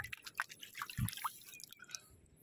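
Light drips and small splashes of water as a river stone is rinsed by hand in shallow water and lifted out, with one soft low thump about a second in.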